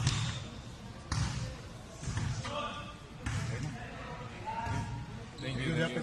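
Basketball bouncing on a hardwood court, single thuds roughly a second apart, with faint voices in the background.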